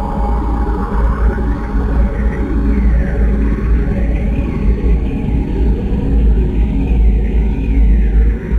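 Experimental noise music: a loud, steady low rumble under dense grainy noise, with a tone sliding up and down in a repeating zigzag about every second and a half.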